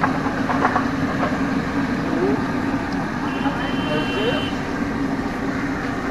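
Steady low hum and busy street noise with traffic, and a brief high tone from about three seconds in that lasts a little over a second.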